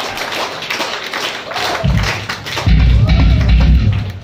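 Rock-club audience clapping and calling out between songs. A single low thump comes from the stage about two seconds in, then a loud low rumble from about three seconds in that stops just before the end.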